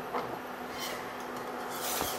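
Wire whisk stirring a thickened wine sauce in a stainless steel pan: soft rubbing and scraping of the wires against the pan, faint and uneven.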